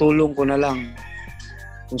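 A rooster crowing once, ending in a long held note.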